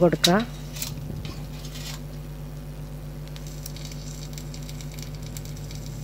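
Soft wet dabbing and brushing as a basting brush spreads oil over a hot marinated whole chicken in an air fryer basket, with a faint fine crackle from about halfway.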